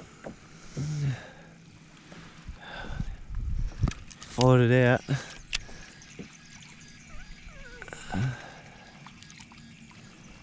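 A man's wordless vocal sound, a wavering hum or groan about half a second long, about halfway through, with shorter grunts near the start and near the end. Scattered light clicks and knocks and faint water movement from the kayak sound between them.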